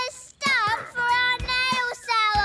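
A child's voice singing a sung glide and then held notes, with music behind it.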